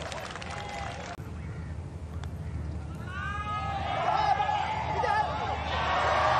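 Gallery applause that cuts off about a second in, then a quiet moment broken by the single click of a putter striking a golf ball. A second later the crowd gives a rising, many-voiced "ooh" as the putt misses.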